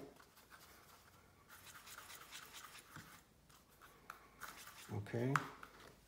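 Faint scratching and rubbing of a paintbrush working water into green watercolour pigment in a palette well, with a few small clicks.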